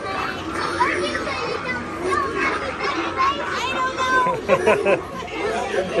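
A group of children's voices chattering and calling out over one another, with a laugh a little past four seconds in.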